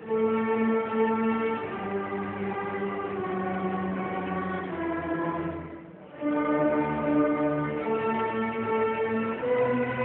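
A school string orchestra of violins and cellos playing sustained bowed chords. One phrase fades away just before six seconds in, and the ensemble comes back in loudly a moment later.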